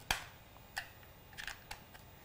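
A sharp plastic click just after the start, then a few fainter clicks and handling noise: a charger cable being plugged into a DJI Phantom drone's flight battery.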